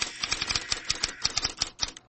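Typewriter-style clicking sound effect: a rapid, uneven run of sharp clacks that stops just before the end.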